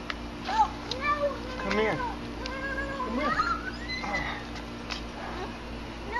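A run of short, high-pitched cries that glide up and down in pitch, over a steady low hum.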